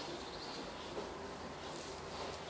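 Quiet outdoor background noise: a faint, steady hiss with no distinct sound standing out.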